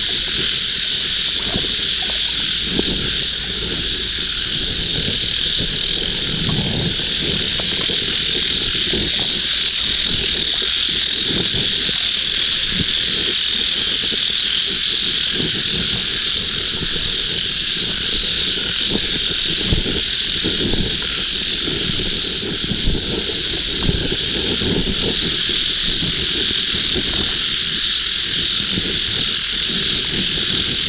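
Night chorus of frogs and insects in a wet field: a dense, steady high-pitched drone, with irregular lower sounds beneath it and a few short sharp knocks near the end.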